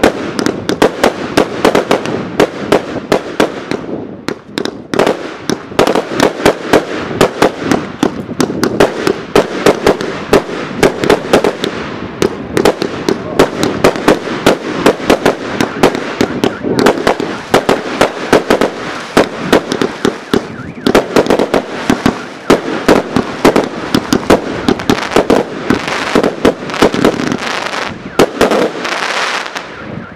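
Aerial fireworks firing in rapid succession, with launch reports and shell bursts several times a second over a continuous crackle. The volley stops abruptly just before the end.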